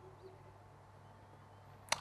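Near silence: faint room tone with a low steady hum, then one short sharp click just before the end.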